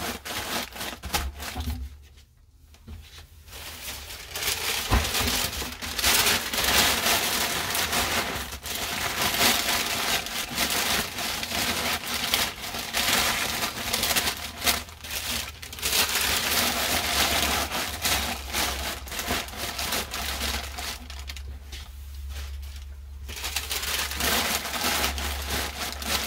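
Packing paper being crumpled and pushed into a cardboard shipping box around wrapped items, with short pauses about two seconds in and again a few seconds before the end.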